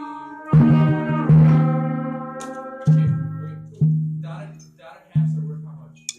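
Timpani struck five times with felt mallets, each stroke the same low note that rings and slowly fades; the first two come close together, the rest about a second apart.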